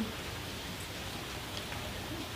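Steady background hiss with a few faint ticks.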